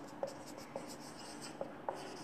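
Marker pen writing on a whiteboard: faint strokes with four short squeaks of the tip.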